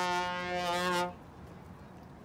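Trombone holding one long steady note that stops about a second in.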